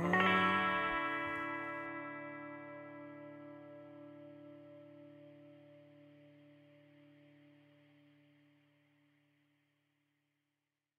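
A guitar chord, played through effects, struck once and left to ring, fading slowly to nothing over about nine and a half seconds at the end of the song.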